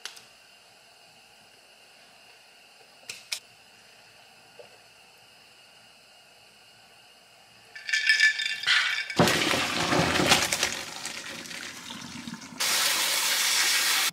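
Kitchen faucet water splashing loudly and unevenly into a stainless steel sink, then settling into a steady rush from the pull-down sprayer onto cooked pasta in a colander near the end: the pasta being rinsed with cold water. Before the water, a short sip through a straw from an iced drink.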